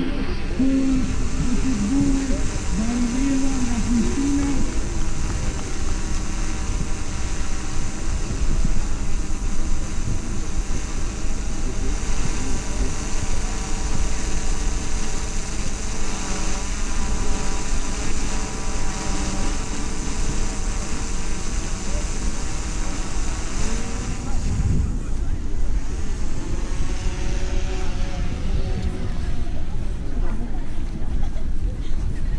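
Wind rumbling steadily on the microphone, with a person's voice briefly in the first few seconds and again about 24 seconds in.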